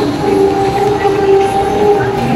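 Electronic train-whistle sound effect from a battery-powered Thomas the Tank Engine kiddie ride: one long, steady whistle tone held for nearly two seconds over a noisy background.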